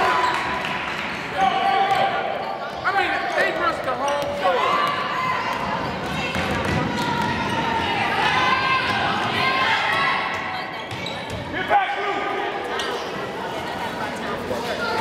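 A basketball bouncing on a hardwood gym floor, with shouting voices echoing through a large gym.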